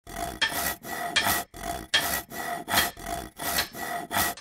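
Rhythmic back-and-forth rasping strokes, about three a second.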